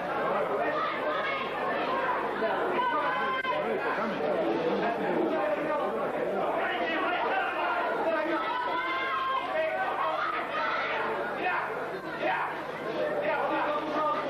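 Crowd of spectators in a large hall, many voices talking and calling out at once without a break, with no single voice standing out.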